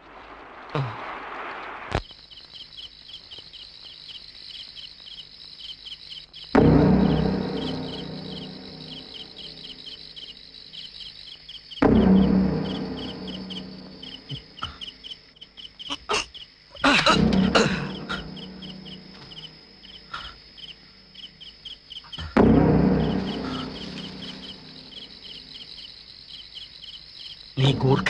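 Crickets chirping in a steady, fast-pulsing trill. Over it a loud, low dramatic music stab comes about every five seconds, four in all, each fading away over a few seconds.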